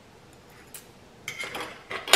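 A metal utensil clinking against a dish: one light click a little before a second in, then a quick run of clinks in the second half.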